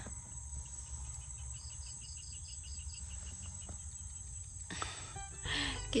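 Crickets or other insects trilling steadily over a low rumble, with a quick run of high chirps about two seconds in and a brief rustle near the end.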